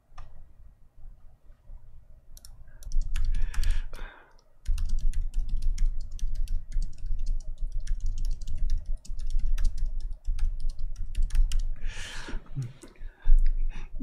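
Rapid typing and clicking on a computer keyboard close to the microphone, starting a couple of seconds in and running steadily until near the end, with a low rumble underneath.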